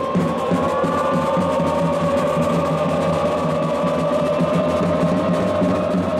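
Football supporters' song in the stands: a long held note over a steady drum beat.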